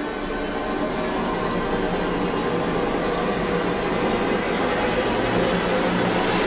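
A dense, droning noise with a few steady low tones underneath, slowly growing louder: a horror-style sound-effect swell in the title sequence.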